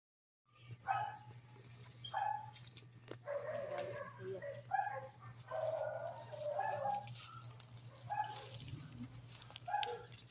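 An animal's short calls, repeated about every second, over a steady low hum.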